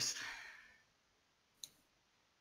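The tail of a spoken question fades out, then one short, sharp click sounds about a second and a half in.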